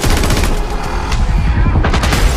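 Rapid gunfire in a film shootout, many shots in quick succession, mixed over trailer music.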